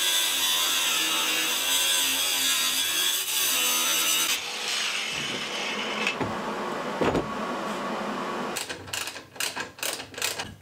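Angle grinder with a cut-off disc cutting into a rusted bolt on the steel deck, running under load with a steady high whine. After about four seconds the cut lightens, with a couple of knocks, and a run of metal clanks follows near the end.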